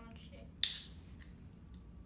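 Pull-tab of a can of Grapetiser sparkling grape juice cracking open, with a sharp burst of carbonation hiss about half a second in that dies away quickly.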